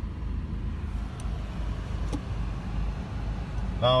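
Steady low rumble of the Peugeot 308's 1.6 diesel engine idling, heard inside the cabin, with two faint clicks about a second and two seconds in.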